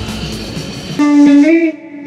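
About a second of background music over a low rumble, then an electric guitar cuts in playing sustained single notes, one of them bending upward in pitch.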